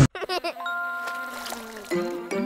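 Cartoon logo jingle: a few quick pitched blips, then a bell-like chime chord held for about a second and a half.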